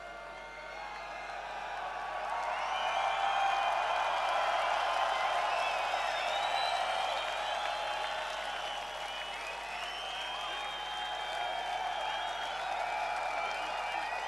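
Large crowd cheering and shouting, swelling over the first few seconds and then holding loud.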